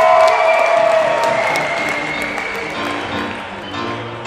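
Audience applause, with scattered sharp claps, dying away as music plays over the hall's speakers.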